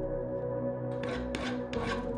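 A small cast metal block rubbed by hand on sandpaper: three short gritty strokes about a second in, over steady background music.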